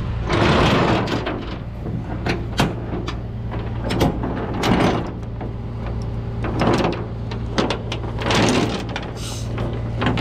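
Steel tow chain and grab hooks rattling, scraping and clanking against a diamond-plate steel rollback bed as they are hooked to the truck, in a series of irregular bursts. A steady low hum runs underneath.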